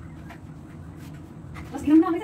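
Soft rubbing and rustling of cloth napkins being smoothed and folded on a table, then a loud woman's voice bursting out just before the end.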